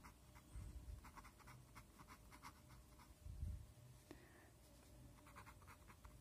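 Pen writing on paper: faint, quick scratching strokes as letters are formed, in two runs with a pause between them. A soft low bump comes a little past halfway.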